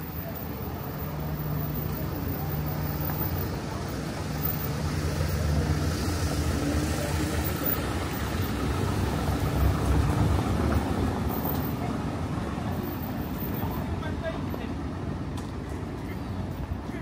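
A motor vehicle's engine running close by at low speed. It grows louder toward the middle and eases off near the end, with people's voices around it.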